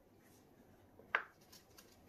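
Quiet room tone broken by a single short click about a second in.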